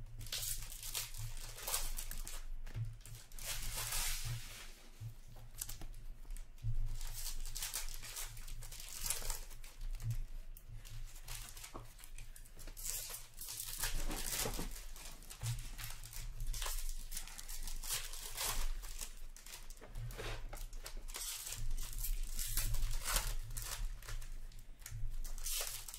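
Hockey card packs being torn open and crinkled by hand, and cards being handled, in a run of repeated short rustling strokes. A steady low hum lies underneath.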